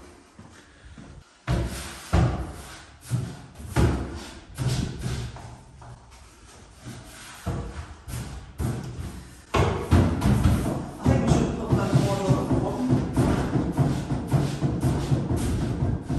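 Background music, much louder from about ten seconds in, with a few sharp knocks in the first half.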